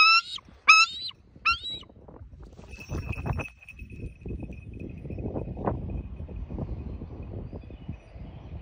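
Bald eagle calling: three short, rising, piping notes in the first second and a half. Then wind buffets the microphone, with a faint steady high tone behind it.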